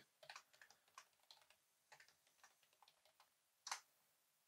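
Faint computer keyboard typing: scattered, irregular key clicks, with one louder key press near the end.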